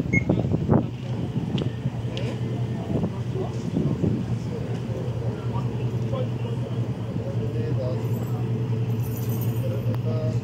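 People talking at a distance over a steady low hum, with a few sharp knocks in the first second.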